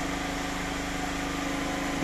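Steady mechanical hum from a running machine, even in level, with a few fixed tones in it.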